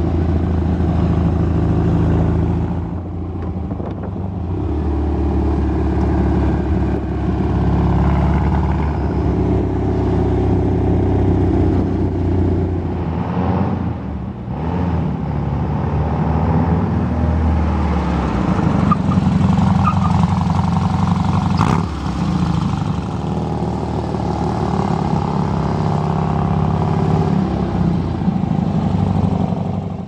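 Dune buggy's 1835 cc air-cooled VW flat-four engine running under way, its pitch and loudness rising and falling with throttle and gear changes. It is heard first from on board, then from the side as the buggy drives around an open lot.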